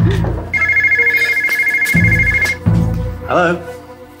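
Electronic telephone ringing for an incoming call: one warbling two-tone trill about two seconds long, starting about half a second in, over background music.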